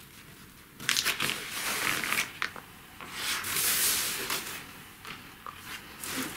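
A sheet of paper being handled and crumpled, crinkling and rustling in irregular bursts, with a few light taps toward the end.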